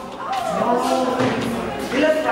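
A person's voice drawn out into one long, low held sound lasting about a second, among other voices in a room.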